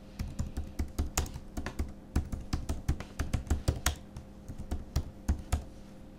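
Typing on a computer keyboard: a quick, uneven run of keystrokes, several a second, that stops shortly before the end.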